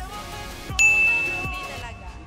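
A single bright, bell-like ding about three-quarters of a second in, one clear high tone that rings and fades over about a second, heard over background music.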